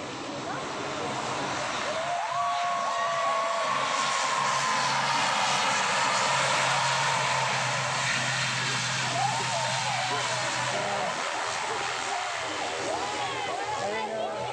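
ATR-type twin-turboprop airliner on the runway, its engines and propellers running with a steady low hum and a rushing roar that swells a couple of seconds in, peaks and then slowly eases as the plane rolls along the runway. Onlookers' voices come in now and then over it.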